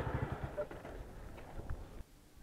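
Motorcycle engine idling faintly, with a few light clicks and knocks over it. The sound cuts off suddenly at the end.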